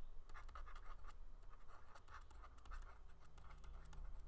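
Faint scratching and tapping of a stylus writing on a tablet screen, in many quick short strokes.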